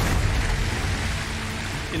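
Heavy splashing of water as a crocodilian thrashes at the surface of weedy water: a rush of splashing that eases off toward the end, over a low steady rumble.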